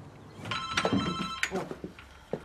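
A telephone ringing: one electronic ring of about a second, several steady high tones sounding together.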